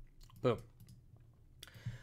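A few faint, light clicks of a computer mouse on a desk, in the gap after a spoken 'boom'.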